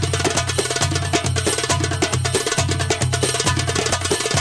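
Middle Eastern drum solo music for belly dance: rapid drum strikes over a low beat that repeats steadily.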